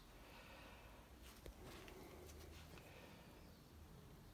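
Near silence: room tone with a faint low hum and a few faint clicks about a second and a half in.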